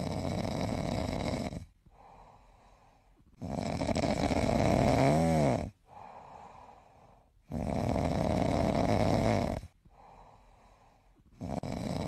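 Snoring: long, loud snores about every four seconds, with quieter breathing between them. In one snore the pitch dips and rises partway through.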